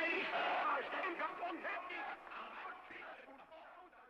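Indistinct voices that fade out steadily, dying away near the end.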